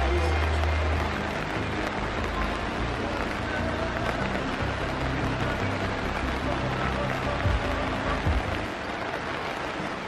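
Steady hiss of rain falling, with background music and its low bass line underneath.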